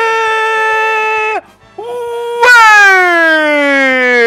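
Two long held horn-like notes: the first stops about a second and a half in, and the second swells louder and then slides slowly and steadily down in pitch.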